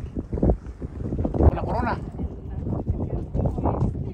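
Indistinct voices talking at moments, over the low rumble of wind buffeting the microphone.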